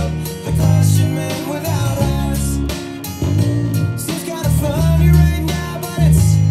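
Ernie Ball Music Man Sterling electric bass playing long held low notes, changing about once a second, along with a full-band rock recording with singing, guitar and cymbals.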